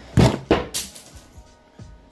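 Three sharp handling noises in the first second, the first the loudest, from pliers and nylon line as a snell knot on a circle hook is pulled tight. Faint background music underneath.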